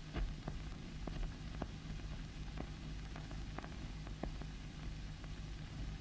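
A steady low hum and hiss with scattered irregular clicks, the background noise of an old film soundtrack.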